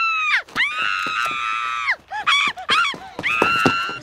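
Animated boy character screaming at a very high pitch: one scream carries in and cuts off, then comes a long held scream, then a few short gliding yelps, and a last held scream near the end.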